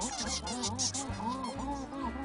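Cartoon bird calls: a quick, overlapping run of short, honking, rise-and-fall squawks, over background music with a bass line.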